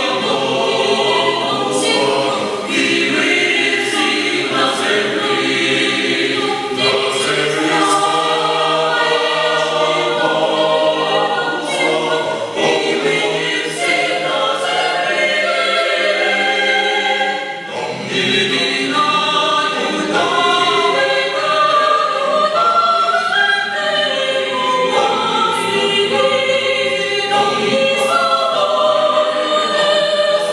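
Mixed choir of men's and women's voices singing a Christmas carol a cappella, in several parts, with a brief breath between phrases a little past halfway.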